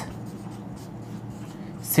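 Marker pen writing on a whiteboard in short strokes.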